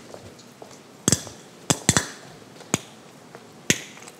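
About six short, sharp clicks and knocks, irregularly spaced, starting about a second in, with the last one near the end, over quiet room tone.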